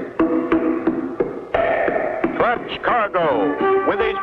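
Opening theme music for a cartoon's title sequence. Held chords are punctuated by sharp percussive hits, and from about halfway a run of sliding, wavering notes sets in.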